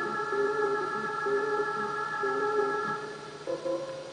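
Background film music: a held chord over a moving line of lower notes, changing to a new chord near the end.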